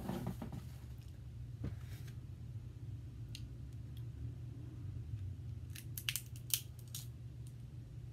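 Snow crab leg shell being cracked and pried apart by hand: a few small isolated cracks, then a quick run of sharp snaps and clicks about six to seven seconds in, from a stubborn shell that won't open easily. A steady low hum runs underneath.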